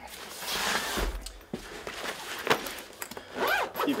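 Portable PA subwoofer with satellite speakers lowered into its padded fabric carry bag: fabric rustling and scraping, with a dull thump about a second in as it settles, and the bag being zipped shut.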